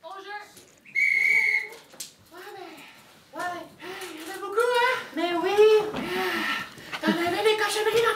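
A single short whistle: one steady high note held for under a second, about a second in. Voices follow from about two seconds in and grow louder toward the end.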